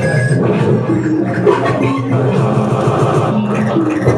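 Loud live experimental electronic music: a sequenced low synthesizer line stepping from note to note under a noisy, clicking industrial texture.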